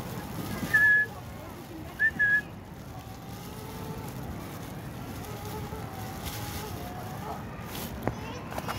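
Pied starling (jalak suren) giving two clear, high whistled notes, the second broken into a quick double, over a steady background of low noise.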